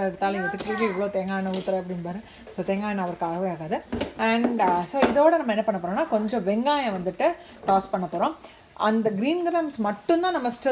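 A woman talking throughout, over a faint sizzle of cumin seeds and garlic frying in oil in a pan.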